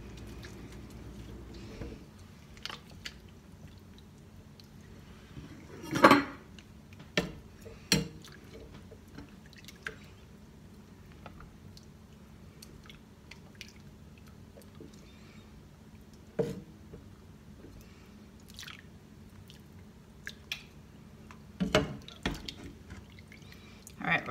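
Scattered drips and small splashes of hot water and the soft squish of warm mozzarella curd being worked by hand and handled with a slotted spoon in a pot of hot water. A few sharper clicks and knocks come through, the loudest about six seconds in.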